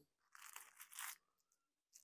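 Faint crinkling of plastic packaging being handled, in a few short bursts during the first second or so.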